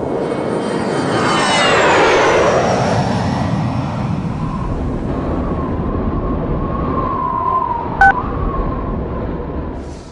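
Jet aircraft flying past, a loud rushing engine noise whose whine falls in pitch about two seconds in as it goes by. A brief sharp click comes near the end.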